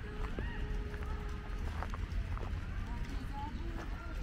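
Footsteps walking on a gravel park path, with distant voices over a steady low rumble.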